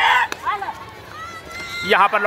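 Players shouting on a kabaddi court during a raid: a loud burst of shouting at the start, short calls soon after, then a single held high note near the end as the defenders move in to tackle the raider.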